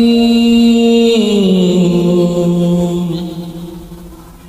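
A voice holding one long chanted note, which steps down to a lower pitch about a second in, holds there, and fades away near the end.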